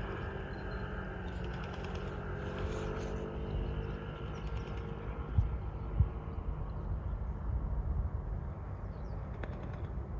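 Outdoor ambience in an open field: a steady low rumble, with two short, sharp thumps about five and six seconds in.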